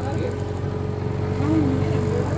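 A boat's motor running with a steady, even hum.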